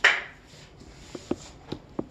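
Movement noise as a student gets up from her chair: a short sharp rush of noise at the start, then three or four light knocks.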